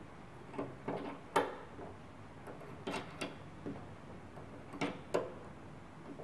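Brass slotted masses clicking against each other and the weight hanger as they are stacked on: about seven short, light metallic clicks, several in pairs, the loudest about a second and a half in.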